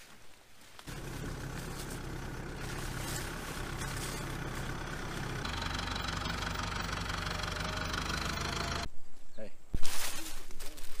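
Farm tractor's diesel engine idling steadily. It comes in about a second in and cuts off suddenly near the end.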